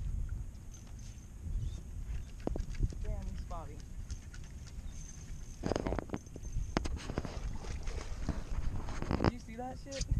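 Low wind rumble on the microphone with scattered knocks and handling noises on the boat, thicker around six and nine seconds in, and a short muffled voice about three seconds in.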